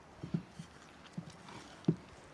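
Hands kneading fresh flour-and-water dough in a glass bowl: a few dull, low thumps as the dough is pressed and pushed, the loudest just before the end.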